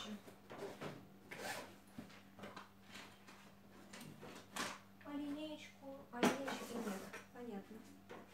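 Faint, low speech with several short clicks and knocks of objects being handled, over a steady low electrical hum.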